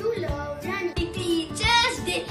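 A child singing a song over backing music with a beat.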